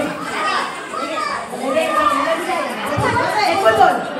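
A room full of people talking and calling out over one another, with a voice through a handheld microphone among them.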